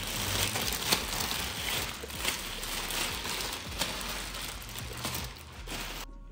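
Clear plastic packaging film crinkling and rustling continuously as stroller parts are handled and pulled out of it, with scattered sharper crackles. The rustling stops abruptly near the end.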